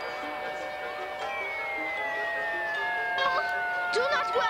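Background music with held notes. From about a second in, a long whistle slides slowly downward: the cartoon sound of a baseball falling from the sky.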